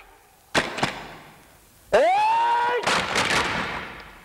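A single sharp bang with a ringing tail about half a second in, then a high scream that rises quickly and holds steady for nearly a second before trailing off: film fight sound effects.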